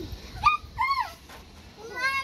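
A young girl's two short, high-pitched squeals, each rising and falling in pitch, as the children play.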